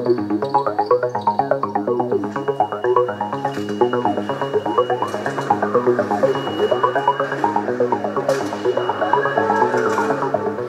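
Instrumental break in a live song: an accompanying guitar plays a fast run of short picked notes over a steady bass line.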